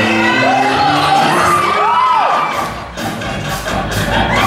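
Pop dance track playing over a hall's sound system while the audience cheers and whoops, with rising-and-falling whoops about half a second and two seconds in. A steady beat comes back in after a brief dip near the three-second mark.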